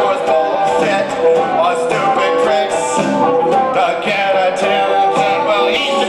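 Live amplified music: a rock song played on a Chapman Stick, its plucked and tapped notes ringing out in a continuous line.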